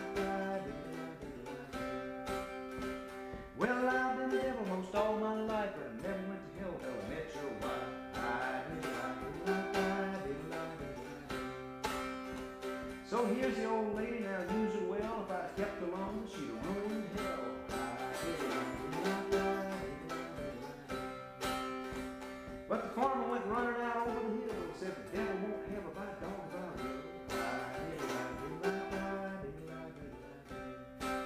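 Acoustic old-time string-band instrumental, with plucked strings keeping a steady beat. A wavering, sliding melody line comes in about four seconds in, again around thirteen seconds and near twenty-three seconds.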